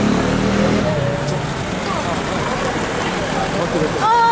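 An Audi saloon moving off slowly through a crowd, its engine running low under the crowd's chatter and shouts. The engine hum is plainest in the first second, then voices carry over a steady street noise.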